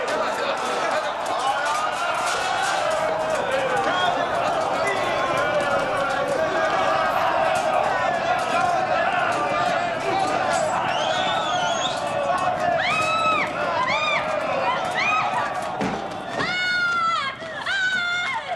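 A crowd of many voices shouting over one another in a melee, with scattered clattering knocks of a scuffle. In the last few seconds several high, arching screams rise above it.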